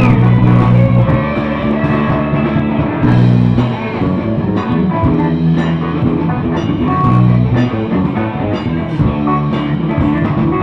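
Live rock band playing an instrumental passage: electric guitar over held bass notes and a drum kit, loud and steady.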